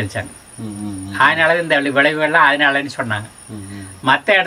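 An elderly man speaking Tamil in short phrases, with a brief pause about three seconds in. A faint, steady high-pitched whine runs behind the voice.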